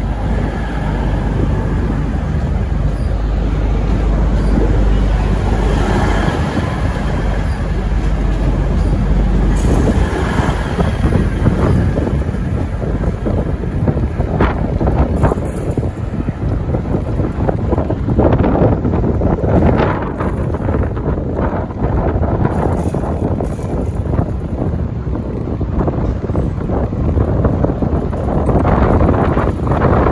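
V/Line VLocity diesel multiple unit running past and pulling away through the station yard, with repeated short clatters of its wheels over rail joints and points. Heavy wind rumble on the microphone dominates the first ten seconds or so.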